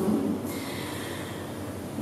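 A breath drawn near the microphone in a pause between sentences, fading within about half a second into low steady room hiss.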